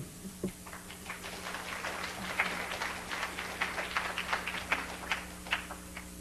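Audience applauding. The clapping swells from about a second in and thins out to a few last claps near the end.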